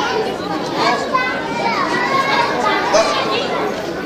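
Many children talking and calling out over one another, a steady babble of young voices.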